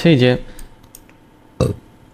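A man's voice finishes a word, then a few faint computer-mouse clicks. About a second and a half in comes one short, loud throaty sound from the speaker.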